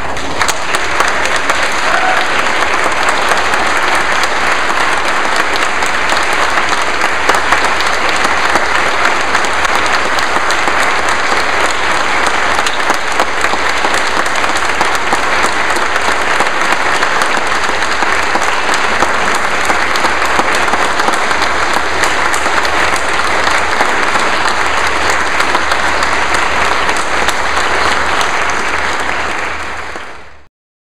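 Congregation applauding: sustained clapping from many hands, fading out near the end.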